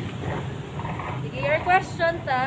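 A woman's voice starts speaking about halfway through, over a steady low background hum; otherwise no distinct sound stands out.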